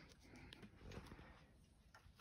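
Near silence: room tone, with only a few faint soft ticks.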